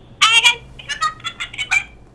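A caller's shrill, high-pitched voice sound over the phone line: a loud burst just after the start, then several shorter high bursts. It is a nuisance call coming through a second time, and it gets blocked.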